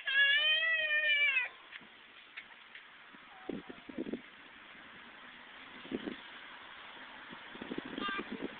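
A young child's long, high-pitched vocal call, held for about a second and a half at the start, followed by a few faint knocks.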